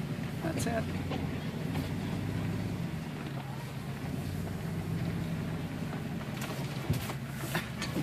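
Vehicle engine and road noise heard from inside the cab while driving on a gravel road: a steady low hum, with a few short knocks and rattles near the end.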